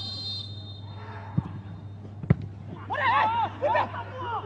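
A football kicked hard from a free kick: one sharp thud about two seconds in, with a smaller thump a second before it. A low steady hum runs underneath, and a man's voice comes in near the end.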